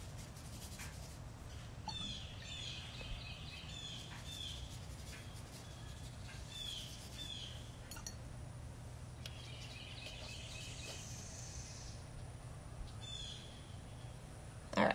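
Faint bird chirps: scattered short high calls throughout, over a steady low hum.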